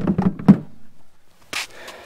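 A quick cluster of knocks and thumps from handling, the loudest about half a second in, then a short hiss about a second and a half in.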